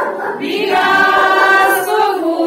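A group of women singing together, holding one long note for about a second in the middle.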